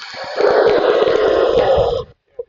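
Outro title sound effect for a glitching "Thank You" card: a dense, noisy swell that grows louder about half a second in, then cuts off suddenly at the end.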